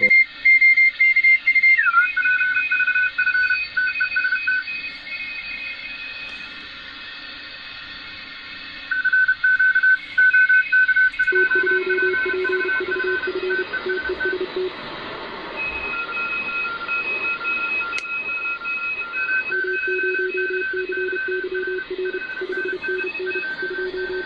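Morse code (CW) signals on the 20-metre amateur band, heard through a shortwave receiver's speaker over a background hiss. Several keyed beeps at different pitches overlap, and the tones slide down in pitch about two seconds in.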